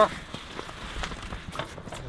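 Irregular soft crunching of boots on snow as a rider shuffles a homemade ski-bike into position to set off, with a few faint knocks.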